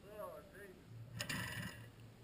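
A few quiet words from a man, then about a second in a sharp metallic clack and a short mechanical rattle as the rider climbs onto and handles the 1982 Husqvarna WR 430 dirt bike.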